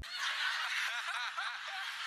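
Faint, thin-sounding voices with quiet snickering laughter over a steady hiss, with no low end, as heard through a small speaker.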